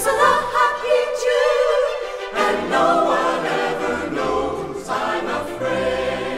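Slow orchestral music with sustained, swelling melody lines; the bass drops out briefly about a second in and comes back a little after two seconds.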